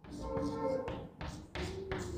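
Chalk on a blackboard while numbers are written, ending in a few sharp taps in the second half as the chalk strikes the board.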